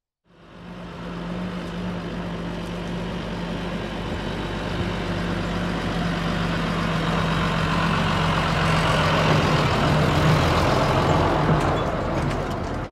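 Tractor engine running steadily as the tractor drives up and passes close. The sound fades in at the start and grows gradually louder, loudest near the end.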